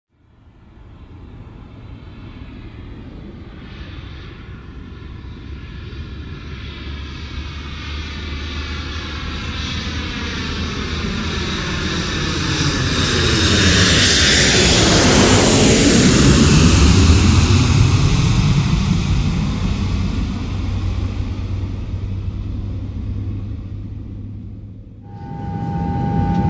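Jet airliner flying past. Its engine noise builds slowly, peaks a little past halfway with a sweeping whoosh, then fades. A steady tone comes in near the end.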